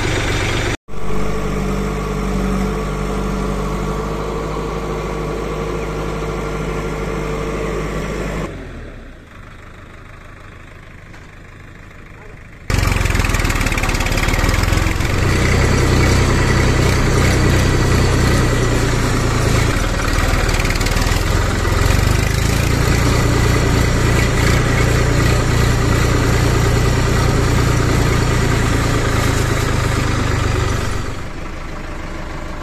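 Diesel tractor engine running, cut between clips: steady running while the tipping trailer is raised, a quieter stretch about nine seconds in, then from about thirteen seconds a louder, steady engine note with a deep hum.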